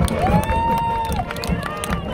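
Marching band show music: long held melody notes that slide up into their pitch and fall away at the end, over a steady low beat about twice a second.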